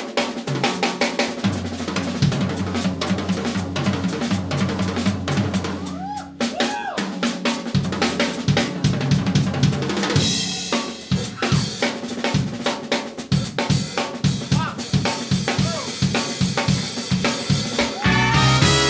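Drum kit played as a solo in a Latin jazz tune: fast, dense snare, tom and bass drum strokes with cymbals and rimshots.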